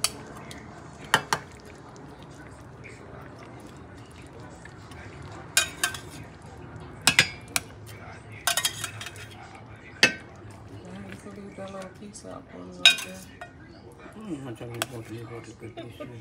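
A cooking utensil knocking and clinking against a stainless-steel pan of fish stew, in separate sharp strikes scattered irregularly, over a steady low background hum.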